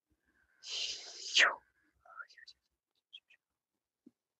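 A woman's deep breath taken into a close microphone, a breathy hiss about a second long that swells near its end, followed by a few faint short breath or mouth sounds.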